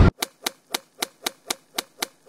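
A title-animation sound effect: a run of about eight short, sharp clicks, evenly spaced at about four a second, one for each letter as it appears.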